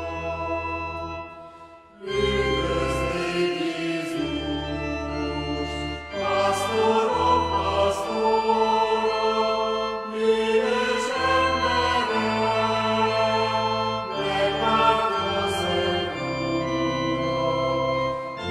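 Christmas music: a choir with organ holding sustained chords that change about every two seconds, with a short pause about two seconds in.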